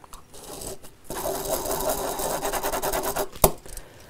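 A felt-tip pen scratching quickly back and forth on paper for about two seconds, the pen running out of ink. A single sharp click follows near the end.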